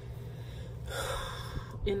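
A woman's short, sharp intake of breath about a second in, an unpitched rush of air, with a faint click just before her speech resumes at the end.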